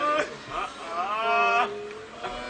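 A man's voice in a long, drawn-out lamenting cry through a microphone and loudspeakers, the held note rising from about half a second in and lasting until near the end.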